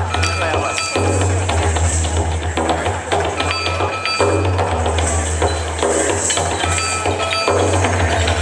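Yosakoi dance music with a heavy bass line and steady percussion, loud and continuous.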